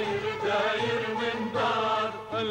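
A chorus of men and women singing a song together, with musical backing underneath.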